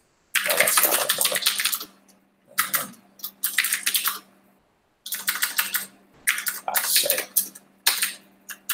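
Computer keyboard typing in three quick bursts of keystrokes with short pauses between; the last burst is the longest.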